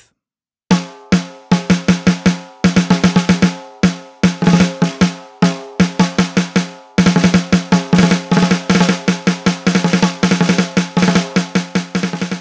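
Sampled snare drum hits from the SPL DrumXchanger plug-in, triggered by a stick pattern played on a rubber practice pad: a fast pattern of ringing snare strokes with quieter ghost notes between accents, starting just under a second in and turning into dense rolls from about halfway.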